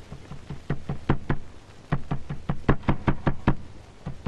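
Rapid, repeated knocking on a door, in two quick flurries with a short break about two seconds in.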